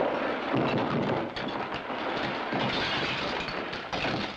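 Cartoon crash sound effect: closet contents tumbling down in a long, continuous clattering crash of many jumbled bangs and rattles, which stops near the end.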